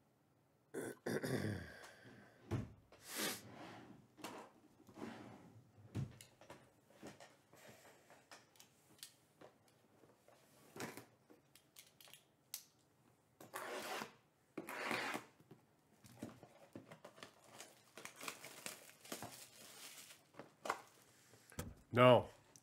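A throat clearing about a second in, then hands handling cardboard trading-card boxes: irregular scrapes, taps and rustles as the boxes are moved and one is opened.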